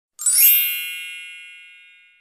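A bright, shimmering chime sound effect: a cluster of high ringing tones that starts suddenly just after the beginning and fades out evenly over about a second and a half.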